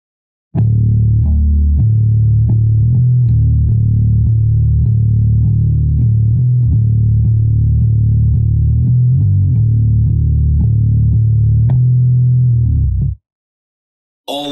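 Electric bass (Fender Precision Bass in drop B tuning) played with a pick: a steady, syncopated run of low notes, mostly repeating the same note with short higher notes at the ends of phrases. It starts about half a second in and stops sharply about a second before the end.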